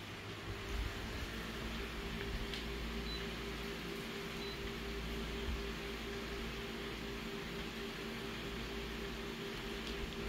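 Office colour photocopier running with a steady mechanical hum and a low rumble, a faint tick or two over it.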